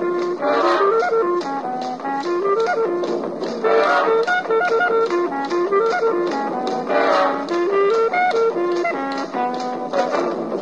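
A 1940 swing-era dance band playing an instrumental: a melody line rising and falling in short steps over a steady drum beat of about four strokes a second, with fuller ensemble swells about every three seconds.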